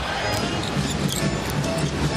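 Basketball game sound on the court: a ball dribbling on the hardwood and occasional sneaker squeaks over steady crowd noise, with music playing.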